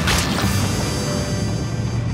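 A sudden splashing crash as a gush of oil hits a cartoon tunneling machine, with a second hit about half a second in. Background music and the machine's steady low hum carry on underneath.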